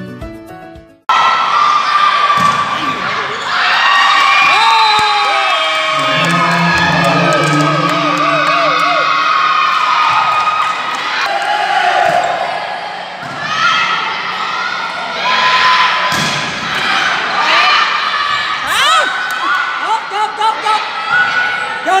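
The tail of an intro music track cuts off about a second in. Then comes the sound of a women's volleyball match in a gymnasium: spectators and players shouting and cheering throughout, with the sharp smack of the ball being struck now and then.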